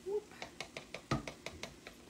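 A quick, uneven run of light clicks and ticks from a plastic bottle and measuring spoon being handled while white vinegar is measured out, with one heavier knock a little past a second in.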